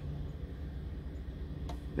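Car engine idling: a low, steady hum, with a faint click near the end.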